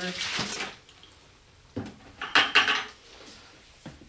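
Water poured from one plastic bucket into another in a short splashing burst. About two seconds in comes a clatter of plastic buckets and a long-handled shovel knocking and scraping.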